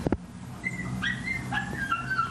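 A dog whining: a few thin, high whines, the later ones sliding down in pitch, after a short sharp click at the very start.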